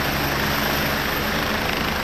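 Air-ambulance helicopter running at the roadside, a steady rushing noise over a low hum.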